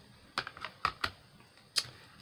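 A stiff clear-plastic embossing folder handled and laid down on a cutting mat: about five light clicks and taps.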